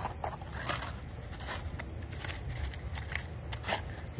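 Light, irregular clicks, taps and rustles of a small box and small objects being handled in the hands.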